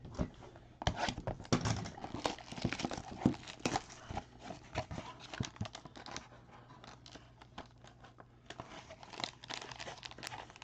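Trading card packaging being handled and torn open: crinkling and tearing of card stock and foil wrapper in quick crackles for the first several seconds. It goes quieter for a few seconds, then starts again near the end.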